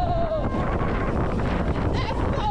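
A rider's long held scream dropping in pitch and ending about half a second in, then steady wind rushing over the microphone of a flying roller coaster moving at speed.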